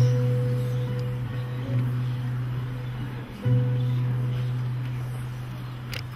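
Acoustic guitars playing slow, soft worship chords; a new chord is struck about every two seconds and left to ring and fade.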